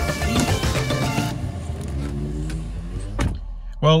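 Background music for about the first second, then a car engine running with a slowly rising pitch, and a single knock just before the end.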